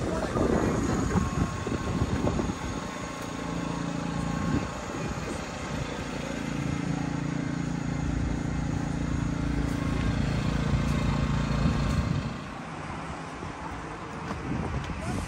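A large engine running steadily nearby, a low hum that comes in about three seconds in, strengthens in the middle and stops fairly abruptly near the end.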